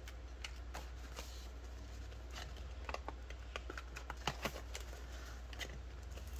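Rustling and scattered light clicks of plastic banknotes and a cash binder's plastic zip pouches being handled, over a faint steady low hum.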